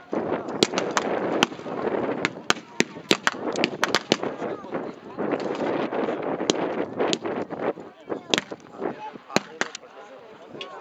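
Scattered rifle fire from bolt-action rifles shooting blanks: about twenty sharp, irregular shots over ten seconds, some close together, some spaced apart. A continuous wash of distant voices and shouting runs underneath.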